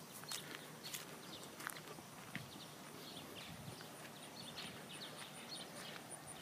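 Faint footsteps walking across a gravel driveway, each step a light crunch, one or two a second. A faint, high, evenly pulsing tick runs behind them and grows clearer in the second half.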